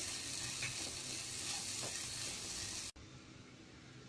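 Spiced vegetable sandwich filling sizzling steadily as it fries in a pan. The sizzle cuts off suddenly near the end.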